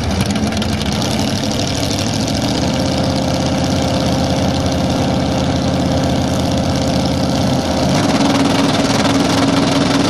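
Drag-racing Chevy II Nova's engine idling steadily as the car creeps forward, its note stepping up and getting a little louder about eight seconds in.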